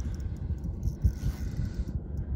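Wind rumbling and buffeting on the microphone in uneven gusts, with no distinct sound above it.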